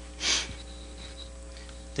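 A brief sniff, about a quarter second long, then a steady electrical hum.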